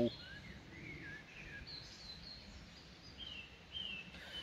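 Faint birdsong: a few short, wavering whistled chirps at intervals, over a low steady outdoor background rumble.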